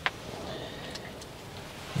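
A single short, sharp click right at the start, then only a faint, steady outdoor background.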